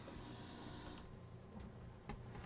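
Faint hiss of FM radio static from a Bluetooth speaker's tuner as it auto-scans the band; the hiss drops lower about a second in.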